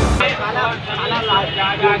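Theme music cuts off abruptly just after the start, followed by people's voices speaking over a low outdoor background rumble.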